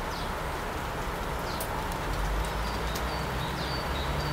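Small birds giving short, high calls, a few single downward notes and then a quick run of high notes near the end, over a steady outdoor background hiss, with a low rumble swelling about two seconds in.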